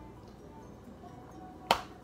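Someone quietly sipping tea from a ceramic mug, with one sharp click near the end as the sip finishes.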